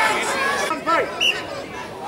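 Overlapping shouts and chatter of several voices, players and spectators around a children's rugby game, with no one voice standing out.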